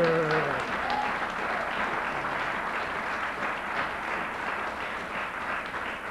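Audience applauding, a steady mass of hand claps that slowly dies down. A voice trails off at the very start.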